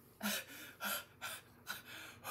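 A woman's breathing in a string of short, quick gasps, about five in two seconds: mock-upset, sob-like breaths.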